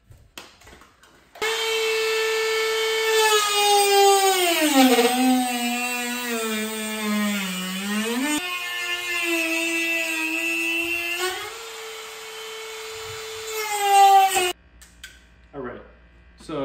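Corded high-speed rotary tool cutting through a fiberglass fender: a steady motor whine that starts about a second and a half in, sags to a lower pitch for a few seconds as the cut bites and the motor is loaded, picks back up, rises briefly near the end and stops.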